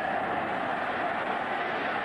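Large stadium crowd cheering steadily as the ball is kicked off.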